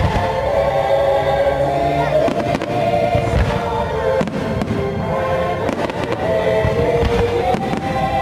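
Aerial fireworks bursting with a series of sharp bangs through the middle, over the show's orchestral soundtrack of long held chords.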